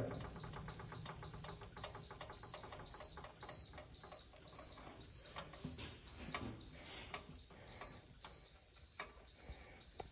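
Commercial convection oven's electronic beeper sounding a high, even beep about twice a second, which stops near the end: the oven's alarm that the bake time is up.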